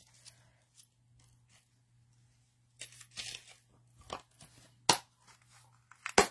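Hands handling craft supplies on a desk: a quiet stretch, then light rustling and small clicks from about three seconds in, and one sharp click near five seconds.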